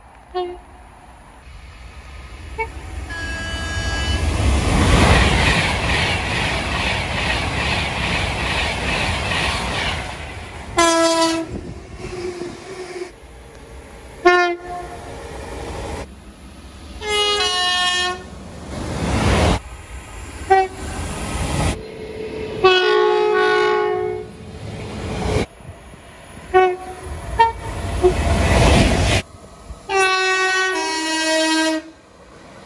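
British passenger trains passing through a station at speed and sounding their horns, in short clips cut one after another. A train rushes past in the first ten seconds; then comes a run of short horn blasts, several of them two notes one after the other, each broken off sharply by a cut.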